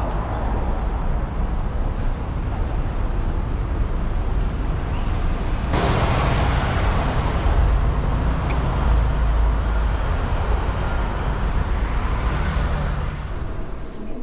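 City street traffic noise: a steady wash of passing cars and other road vehicles, with a heavy low rumble. It gets abruptly louder and brighter a little before halfway through.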